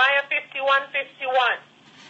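Speech heard over a telephone line, thin-sounding and narrow in range: a voice praying, with a short pause near the end.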